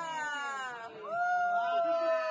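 Several voices calling out in long, drawn-out cries that slowly fall in pitch: the group cheer of a yusheng prosperity toss as the salad is tossed. One long call fades just before the middle and a second begins about a second in.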